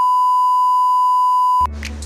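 TV colour-bars test tone: one steady, pure beep that cuts off suddenly about a second and a half in.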